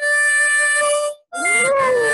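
Harmonica playing a held chord for about a second, then, after a brief break, another note as a German shepherd howls along, its voice sliding up and down in pitch.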